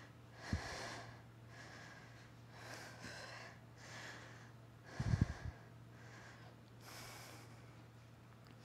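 A woman breathing hard through a set of glute bridges, one breath about every second. There is a dull low thump about five seconds in.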